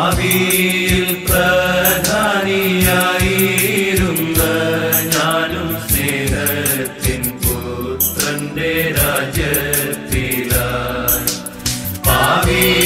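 Malayalam Christian devotional song: sung melody over instrumental accompaniment with a steady percussive beat.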